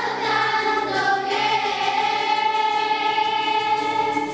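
Children's choir singing, moving to a new note about a second in and then holding it as one long note.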